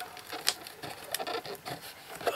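Fingers prying at a perforated cardboard advent calendar door: irregular crackling and scraping of card, with a couple of sharper clicks.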